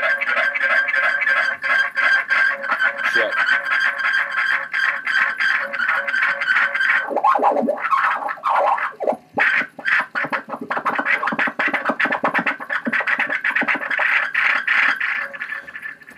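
Tape echo from a modified Webcor Regent tube reel-to-reel, its added playback head fed back into the record input, repeating spoken 'check' over and over. The echoes pile up into a sustained ringing feedback tone that breaks up about seven seconds in and then builds again.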